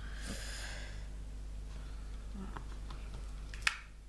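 Diamond painting by hand: a drill pen picking up and setting resin drills on the adhesive canvas, with a soft brushing hiss at first, a few faint taps, and one sharp click near the end.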